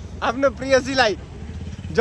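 A voice speaking for about a second, then stopping, over the steady low rumble of a running vehicle engine.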